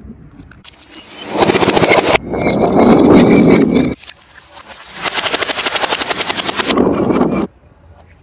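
Crushing and smashing sounds played backwards. There are three loud, noisy rushes, each of which swells up and then cuts off abruptly, two of them with a fast rattling texture.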